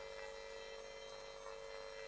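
Faint, steady electrical hum with a constant mid-pitched tone, the background hum of a sound system, with no other events.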